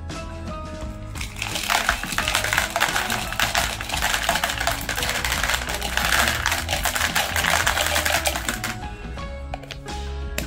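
A stream of small hard-shelled coated candies pouring out of a plastic jar and clattering into a plastic toy bathtub: a dense rattle of tiny clicks from about a second and a half in until near the end, over background music.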